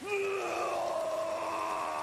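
A cartoon giant's voice wailing in one long, held cry, steady in pitch.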